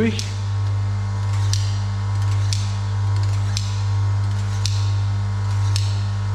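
Knife blade drawn repeatedly through a handheld pull-through sharpener, a short scrape about once a second, finishing the edge after grinding. Under it runs a steady low electric hum.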